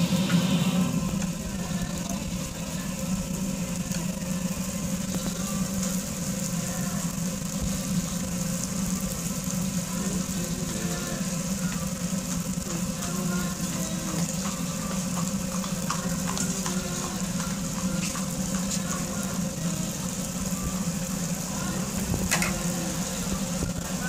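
Rings of sfenj dough sizzling in a large pan of deep-frying oil, over a steady low hum.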